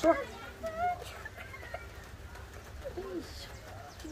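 A chicken clucking a few times: short calls at the start, just under a second in, and again about three seconds in.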